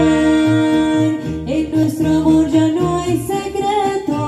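Mariachi band playing live: a singer holds a long note into a microphone for over a second, then moves on to other notes, over strummed guitars and a low bass line pulsing in a steady rhythm.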